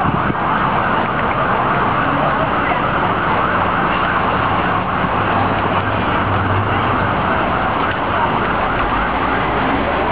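Loud, steady noise of a busy town-centre street at a crossing: road traffic and people moving about.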